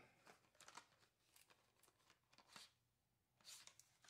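Near silence with faint rustles and light clicks from a cardboard box of metallic paint pens being handled and a pen taken out; the longest rustle comes near the end.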